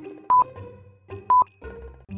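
Countdown timer beeping: a short single-pitch beep once a second, twice here, over quiet background music.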